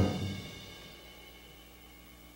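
A jazz combo's closing accent on the final note of a song: a sudden drum and cymbal hit with a chord that rings out and fades away over about a second and a half.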